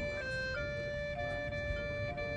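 Synthesizer playing a soft, slow melody of held notes, moving to a new note about every half second to a second.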